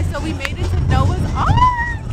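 A woman's voice talking over background music, with a drawn-out note about three quarters of the way through and crowd babble underneath.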